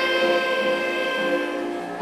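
Clarinet holding a long, steady note between sung lines of a song.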